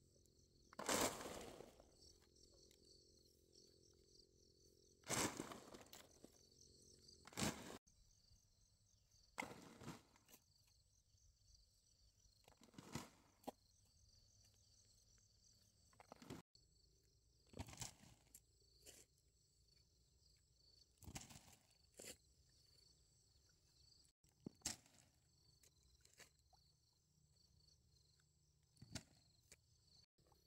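A digging tool scraping and striking into loose dry soil, about nine separate strokes spaced a few seconds apart. Insects chirr steadily in the background.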